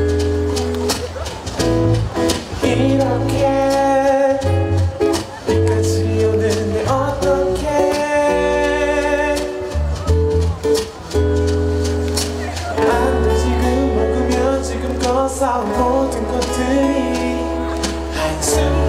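A live pop-rock band playing, with electric guitar, bass and drum kit. Sustained bass notes sit under a guitar and melody line, with steady drum hits.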